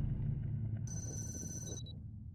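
Trailer sound design: the low tail of a boom fades away, and about halfway in a high electronic tone sounds for almost a second, then cuts off sharply.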